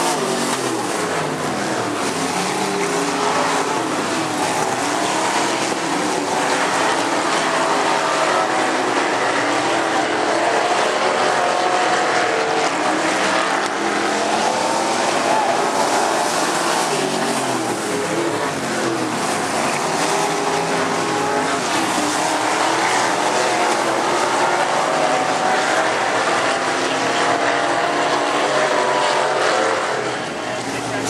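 Several dirt-track race cars running around the oval together, their engine notes overlapping and rising and falling continuously as they accelerate and ease off.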